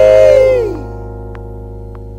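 Gospel song ending: a singer's long held last note slides down and fades out a little under a second in, over a sustained keyboard chord that rings on.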